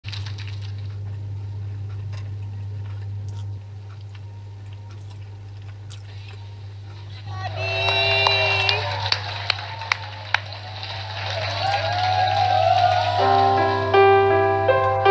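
A steady low hum for the first seven seconds, then a mass of crowd voices rises, and about a second before the end a piano starts a slow song's intro.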